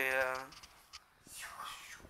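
A voice holds one steady hummed note for about half a second, then a soft, breathy whispered whoosh near the end, as a paper airplane is thrown.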